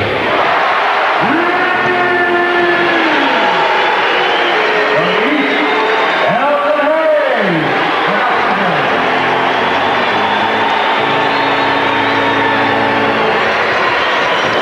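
Loud, steady arena crowd noise of cheering and applause, with music over it: long held notes that rise and fall in pitch.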